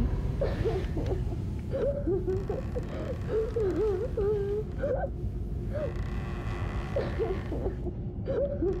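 A child whimpering and crying softly in broken, wavering phrases whose pitch slides up and down, over a low steady drone.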